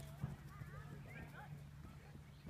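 Faint hoofbeats of a horse cantering on grass.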